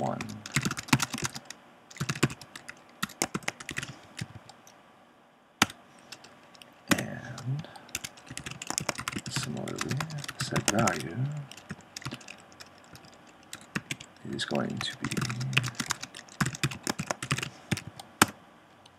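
Typing on a computer keyboard: runs of quick keystrokes broken by short pauses, with a sparser stretch about four to six seconds in.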